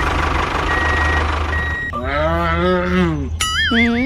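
Vehicle engine running with a reversing beeper sounding about once a second. About two seconds in, a cow lets out one long moo, followed near the end by a short wobbling, stepped cartoon sound effect.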